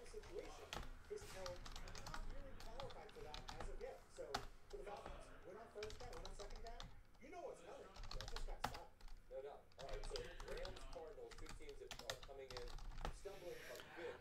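Computer keyboard typing: quick, irregular runs of keystrokes with short pauses between them, fairly faint.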